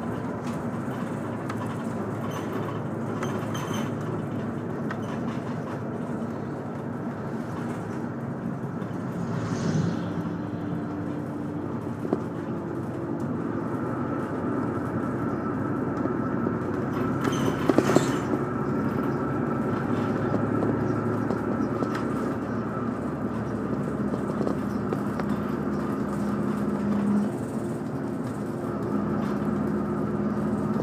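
Cabin noise of a moving route bus: the diesel engine running under steady road noise, its note stepping in pitch a few times. There is a short rattling clatter about eighteen seconds in.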